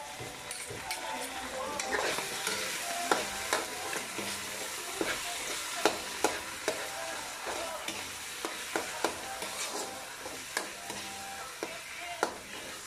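Corned beef with onions and tomatoes frying in a metal wok with a steady sizzle, while a metal spoon and turner stir it, scraping and knocking sharply against the pan at irregular intervals.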